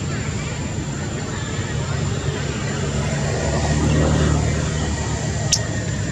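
A passing engine: a low motor hum that grows louder around the middle and then fades.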